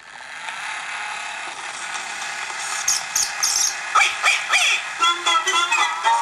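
Lumar clockwork toy gramophone playing a 78 rpm record: the needle drops into a loud surface hiss with crackles. About four seconds in come a few falling, sliding notes, and the tune starts a second later.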